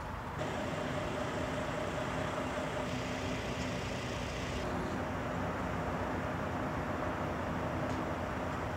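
An engine or motor running steadily: a constant drone with a steady hum that comes in about half a second in and holds without change.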